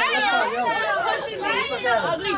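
Several voices, teenage girls among them, talking and shouting over one another.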